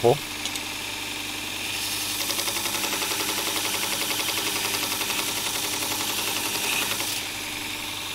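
Robert Sorby ProEdge belt sharpener running, with a plane blade pressed against its 240-grit aluminium oxide belt from about two seconds in until about seven seconds in: a gritty hiss with a fast, even flutter over the steady motor hum.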